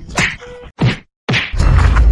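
Three quick whack sound effects, each a falling swoosh, then a brief dead silence and a loud low boom about one and a half seconds in.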